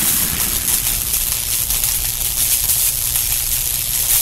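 A steady hiss with a low rumble under it, the sound bed of an animated end-screen template.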